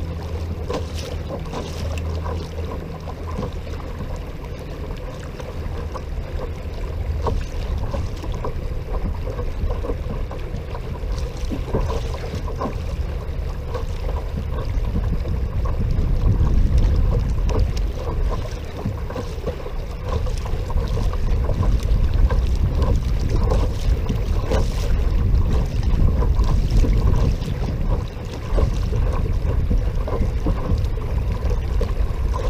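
Kayak under way on an electric trolling motor: wind rumbling on the microphone over water rushing along the hull, with a faint steady motor hum. The wind grows louder about halfway through.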